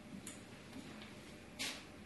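Faint room tone with a small click about a quarter second in and a short rustling burst about one and a half seconds in.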